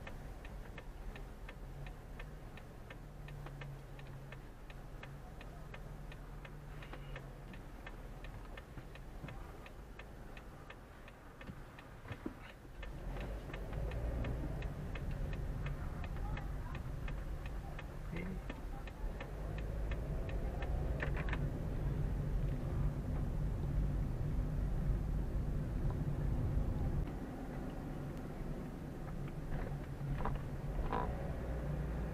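A car's turn-signal indicator clicking steadily, several clicks a second, heard inside the cabin over the car's engine running. The clicking dies away about two-thirds of the way through, and the engine and road rumble grow louder from about halfway as the car picks up speed.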